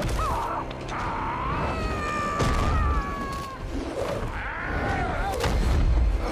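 Film fight-scene sound mix: heavy impacts and booms from the blows over a low rumble, with a wavering, high-pitched gliding tone held for a couple of seconds in the middle.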